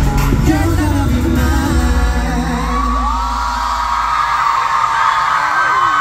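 Live pop song with a male singer over a backing track. About two and a half seconds in he slides up into a long held high note that drops away near the end, while the bass falls out beneath it, with screaming fans behind.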